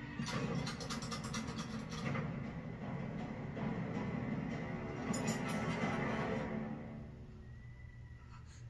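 Horror film soundtrack: a tense music score with runs of rapid clicks, the first in the opening two seconds and another about five seconds in, fading down about seven seconds in.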